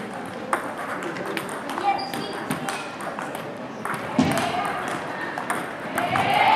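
Table tennis balls clicking irregularly off paddles and table tops, from more than one rally at once, with children's voices murmuring underneath.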